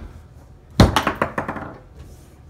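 Foosball game on a Tornado table: a hard clack as a player figure strikes the ball a little under a second in, followed by a quick run of fading knocks, about five a second.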